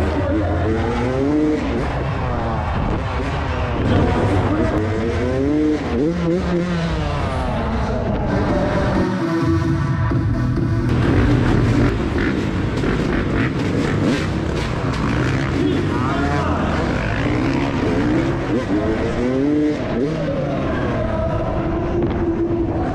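Dirt bike engine revving up and down again and again, its pitch rising and falling with the throttle. About halfway through it holds briefly at a steady pitch.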